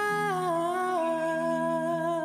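A wordless hummed vocal note, held and then sliding down in pitch in two steps within the first second, over a sustained low chord from the instrumental backing.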